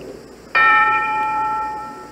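A single bell-like chime, struck once about half a second in, ringing with several clear overtones and fading away over about a second and a half.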